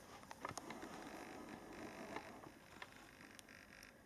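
Near silence: a faint rustle with a few soft clicks.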